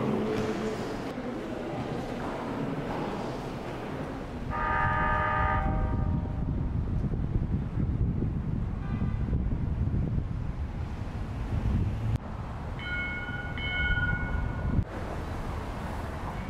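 A horn-like pitched tone sounds twice over a steady low rumble: a lower, fuller blast about four and a half seconds in lasting a second and a half, and a higher, thinner tone near the end lasting about two seconds.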